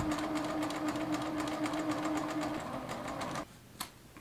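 Juki sewing machine stitching at a steady speed, with rapid, even needle strokes, as it sews a boxed corner seam closed; it stops about three and a half seconds in. A single snip of scissors cutting the thread follows near the end.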